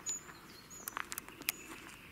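Faint outdoor bush ambience with a few short, high bird chirps and scattered light clicks.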